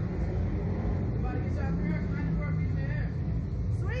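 Indistinct talking over a steady low rumble. A short exclamation, "Sweet", comes near the end.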